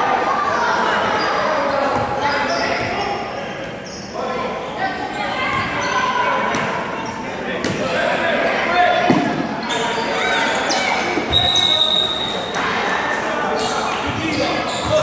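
Basketball bouncing on a hardwood gym floor during a youth game, under a steady din of kids' voices and shouts that echo in a large gymnasium. A brief high squeak comes late on.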